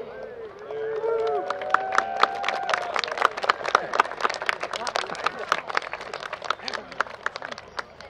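Scattered hand-clapping from a small group, about six claps a second, starting a second or two in and thinning out near the end, with people talking over the start.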